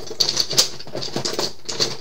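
Rummaging among nail polish bottles and small items on a desk: irregular clicks and light knocks, the sharpest in the first half-second.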